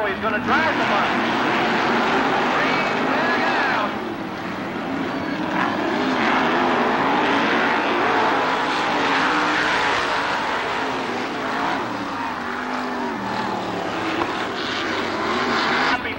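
A field of winged dirt-track sprint cars racing, their engines running hard at speed, heard from the grandstand. The sound eases briefly about four seconds in and then builds again.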